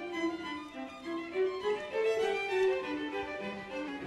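Violin playing a slow melody of held notes that step up and down.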